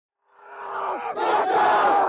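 A huddle of young footballers shouting together in one loud group yell. It starts a moment in and builds over about a second to its loudest.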